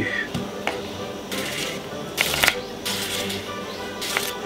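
Background music, with a few short knocks and scrapes of a small kitchen knife cutting an onion on a wooden cutting board.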